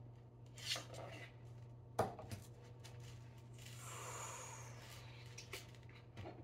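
Wooden toy campfire logs being handled and set in place: light clicks, a sharp wooden knock about two seconds in, and a rubbing slide of wood on wood around four seconds in, over a low steady hum.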